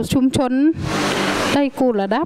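A woman speaking Northern Thai close to a handheld microphone, her speech broken for just under a second by a loud rushing noise with a faint low hum beneath it.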